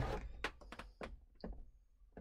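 A handful of faint, light clicks as a flat screwdriver works at the retaining pin on the ball joint of a helicopter door's hydraulic ram, prying the pin up.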